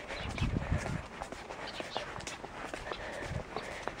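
Footsteps on a concrete sidewalk while walking with a handheld camera, heard as a few soft low thuds, the clearest about half a second in, over outdoor background noise.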